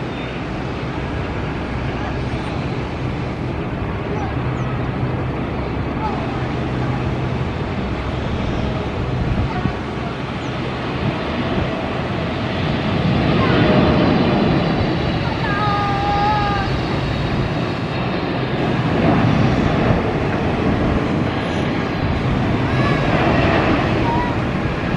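Boeing 777-300ER's GE90 jet engines on final approach: a steady rumble that grows louder, swelling as the airliner flies past and touches down.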